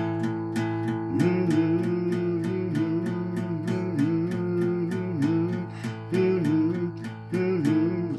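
Steel-string acoustic guitar playing an A power chord (fretted at the 5th and 7th frets) in steady down strums, about four a second. From about a second in, a man's voice carries the vocal melody over the strumming.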